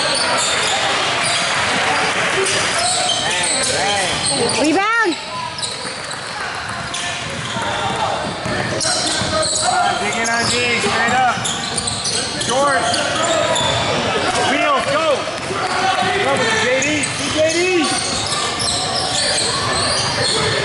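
Basketball being dribbled on a hardwood gym floor, with several short squeaks of sneakers on the court and voices of players and spectators, all echoing in a large hall.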